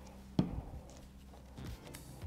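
A single light tap on the work table about half a second in, then faint handling noises of small paper craft pieces and a glue bottle being moved.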